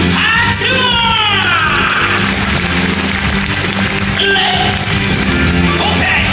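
Live rock-and-roll music from a stage show band, with a steady bass line and a voice holding a long note that slides down over the first two seconds; the voice comes in again near the end.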